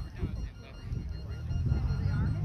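Distant voices of players and people around the field talking, with a low steady hum coming in a little past the middle.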